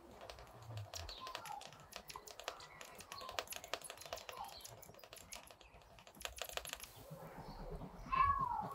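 Graphite of a mechanical pencil scratching on Bristol board in rapid, short shading strokes, a quick dense run of small scratches and ticks that eases off near the end.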